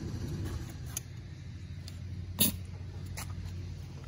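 Air compressor running steadily with a low hum while a tire inflator hose is handled, giving light clicks and one sharp click about two and a half seconds in.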